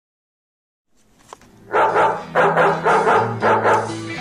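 A dog barking four times, about every half-second, over music with a steady low bass.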